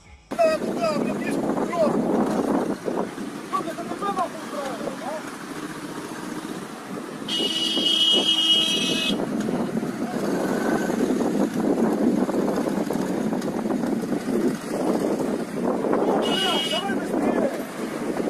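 City road traffic running, with a car horn honking for about two seconds partway through and once more, briefly, near the end.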